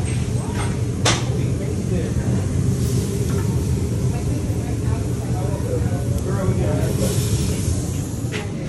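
Food sizzling and hissing on a hot flat-top griddle over a steady low kitchen hum, with a sharp click about a second in and a louder burst of hiss near the end.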